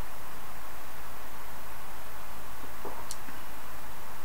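Steady hiss of room tone and microphone noise, with one faint short sound about three seconds in.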